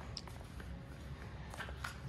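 Quiet room tone with a few faint, short clicks and rustles scattered through it.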